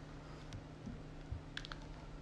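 A few faint, short clicks and taps, with a quick run of three or four about three-quarters of the way through, as of a phone being handled while the live stream is closed.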